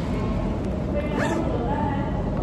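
Indistinct chatter of many voices filling a large room, with a brief high sound that rises and falls about a second in.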